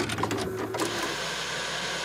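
TV-static glitch transition sound effect: an electrical buzz with crackling clicks, turning about a second in into a steady hiss of white noise.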